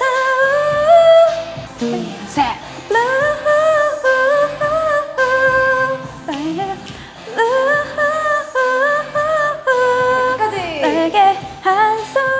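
A woman singing a slow melody of long held notes that glide from one pitch to the next.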